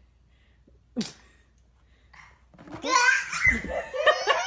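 Loud laughter breaking out about two and a half seconds in and continuing, after a mostly quiet stretch broken by one short vocal sound about a second in.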